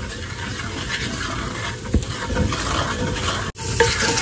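A wooden spoon stirring and scraping a flour-and-ghee roux in a cast-iron skillet, the roux sizzling as the flour cooks. The sound cuts out for an instant near the end.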